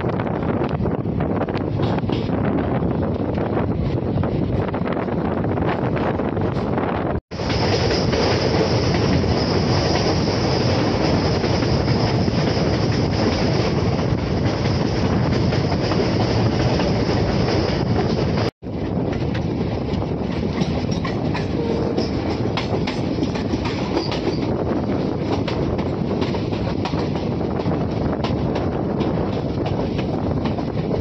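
Passenger train running on the rails, its wheels clattering over the track joints, heard from on board. The sound drops out suddenly twice, about a quarter of the way in and again a little past the middle.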